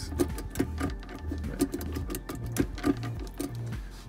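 Background music with a steady beat: a low bass line stepping between notes under an even ticking rhythm.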